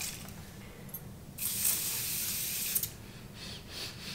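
Aerosol can of thermal spring water face mist spraying: one steady hiss about a second and a half long, starting about one and a half seconds in.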